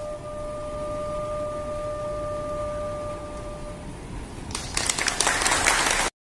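A bamboo flute holds one long steady note that fades out after about four seconds. Near the end a group of people applauds.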